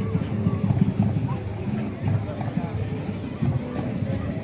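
Indistinct voices with music in the background.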